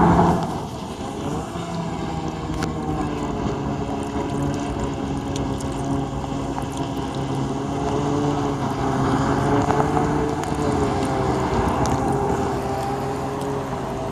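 Stand-up Jet Ski's engine running at speed, a steady drone that wavers slightly in pitch, with wind noise on the microphone. A brief loud rush of noise comes right at the start.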